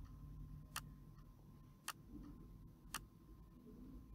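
Three sharp computer mouse clicks about a second apart, over a faint low hum.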